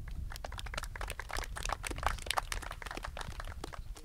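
Applause from a small group: dense, irregular hand claps with a low rumble underneath.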